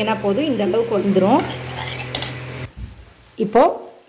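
Metal spoon stirring and scraping a thick tomato-garlic paste in a hot pan, with a light sizzle, as the paste cooks down until the oil separates. The sound drops away about three seconds in.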